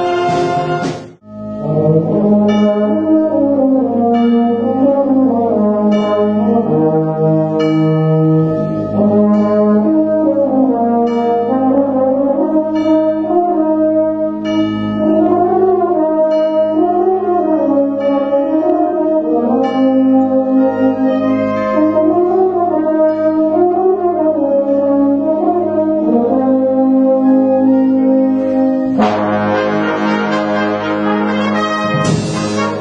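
Wind band playing in concert, brass to the fore. A loud full-band passage breaks off abruptly about a second in. A flowing melody then rises and falls over held low notes, and the full band comes back in loudly near the end.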